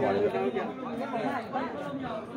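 Several people talking at once: background chatter.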